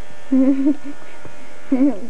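A person's voice: a short held, hum-like vocal sound starting about a third of a second in, and a brief vocal sound near the end.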